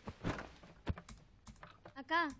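Quiet, irregular light clicks and taps, about half a dozen over two seconds, like keys being typed.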